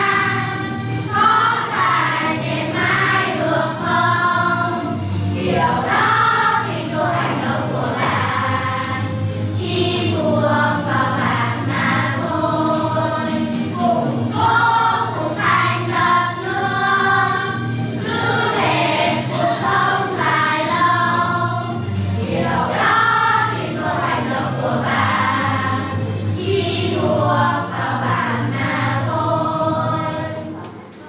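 A song playing: group singing over instrumental backing with a steady low bass line.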